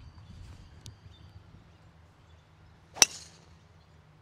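A TaylorMade SIM2 driver striking a golf ball off the tee: one sharp crack about three seconds in.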